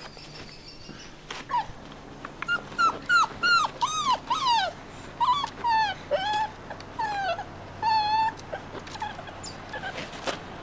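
Brittany dog whimpering: a run of short, high whines, each falling in pitch, about two a second, starting a second or two in and stopping near the end.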